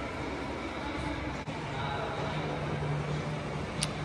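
Steady indoor ambience: a low mechanical hum with background hiss, the hum growing stronger about a second and a half in, and a short click near the end.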